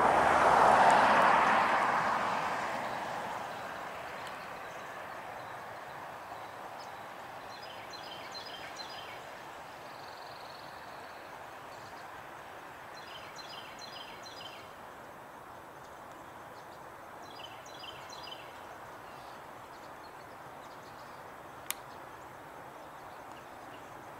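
Outdoor background on a golf course: a broad rushing sound, loudest at the start, fades away over the first few seconds. After that comes a steady low hiss with three short bursts of high bird chirping and a single sharp click a couple of seconds before the end.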